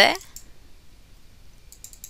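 A quick cluster of computer mouse clicks near the end, used to open File Explorer.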